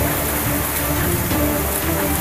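Whitewater rapids rushing in a loud, steady roar, with a small long-shaft boat engine running underneath.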